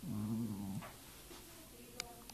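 A pet's low growl, a single steady call of about three-quarters of a second right at the start.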